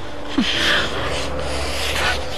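A couple kissing passionately at close range: breathing and the sounds of their lips, with a loud breath surging about half a second in and another near the end.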